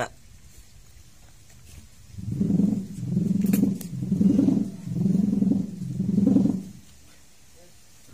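A person's voice, low and drawn out, in about five wordless swelling phrases starting about two seconds in.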